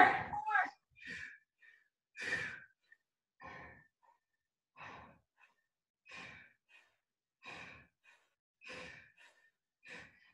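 A woman breathing out hard in short, even puffs, about one every 1.3 seconds, under the effort of weighted Russian twists.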